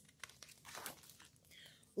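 A page of a large picture book being turned by hand: a faint rustle and crinkle of paper, with a few soft ticks.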